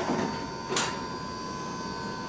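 Elevator doors sliding open: a steady mechanical whir, with a short, sharp noise about three quarters of a second in.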